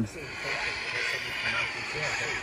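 Static hiss from a handheld radio scanner as it scans for signals, with faint traces of a broadcast coming through the noise.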